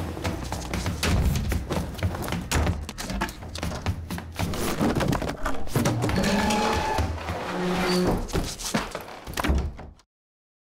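A dense, uneven run of thuds and knocks, with a few sustained musical tones joining about six seconds in; it all cuts off suddenly at the end.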